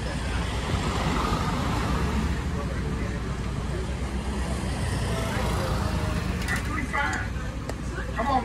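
Tour trolley's engine idling with a steady low rumble while a truck drives past, its noise swelling about a second in and fading by the middle. Faint voices come in near the end.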